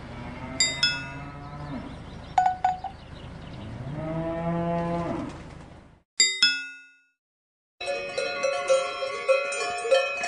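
Cows mooing twice, low drawn-out calls, the second rising and then falling in pitch, with cowbells clanking. About six seconds in the sound cuts off. A bell rings twice and dies away, and after a short silence many cowbells ring together.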